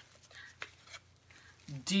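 Faint rustling and a few soft taps of a stack of thin cardboard coasters being handled and one pulled from the pile, followed near the end by a woman starting to speak.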